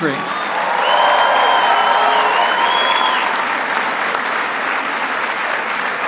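A large conference audience applauding and cheering steadily in response to a line in a speech.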